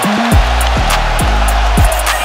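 Background music with a steady beat, sharp regular hits and deep bass notes that slide down in pitch.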